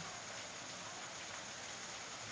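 Steady faint hiss of the recording's background noise, with no distinct sound in it.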